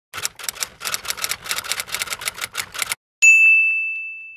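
Typewriter sound effect: a quick run of keystrokes, about six a second for three seconds, then a single carriage-return bell ding that rings out slowly.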